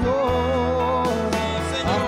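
A man singing a slow Christian hymn into a microphone over instrumental accompaniment with steady bass notes; the sung notes are long and held with a slight waver, and a rising slide comes near the end.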